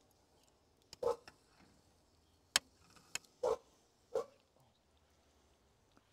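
Mostly quiet, with three short animal calls at a distance and a single sharp click about two and a half seconds in.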